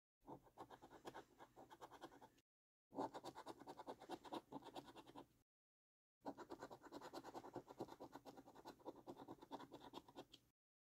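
A coin scraping the scratch-off coating from a paper scratch card in rapid back-and-forth strokes. The strokes come in three spells with short silent breaks between them.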